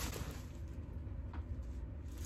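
Quiet room tone: a low, steady rumble with faint hiss, and one faint click about a second and a half in.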